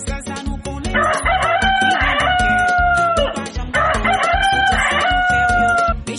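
A rooster crowing twice, two long near-identical crows about a second and four seconds in, laid over music with a steady beat.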